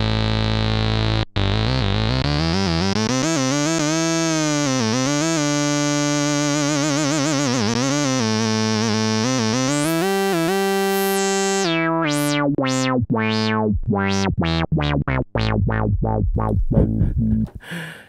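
Roland SH-101 monophonic analogue synthesizer playing a single bright, buzzy synth line. A held low note gives way to a note gliding up and down in pitch. Then comes a run of short sweeping zaps that come faster toward the end.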